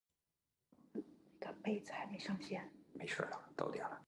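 A person's voice speaking quietly, starting just under a second in and cutting off abruptly at the end.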